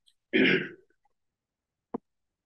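A person clears their throat once, a short burst of about half a second, followed near the end by a single faint click.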